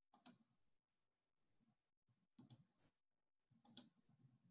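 Three computer mouse clicks, each a quick double tick of the button pressing down and releasing: one right at the start, one about two and a half seconds in and one near the end.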